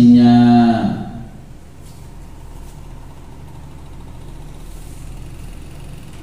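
A man's voice holding a long drawn-out chanted note of Quranic recitation, which slides down in pitch and ends about a second in. After that only a low steady background hum remains.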